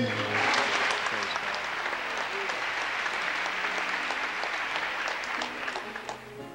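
Congregation applauding, with some voices calling out; the clapping starts suddenly and dies away near the end.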